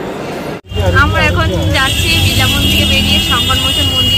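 Riding in a rickshaw through street traffic: a steady low rumble of the vehicle on the road, with voices around it. From about two seconds in a steady high-pitched tone runs on alongside. A brief cut to silence comes about half a second in, just before the rumble begins.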